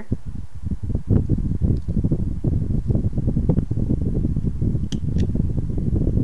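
A carving knife shaving a small hand-held wooden figure, close up: a continuous crackling, rubbing scrape, with a couple of sharp ticks near the end.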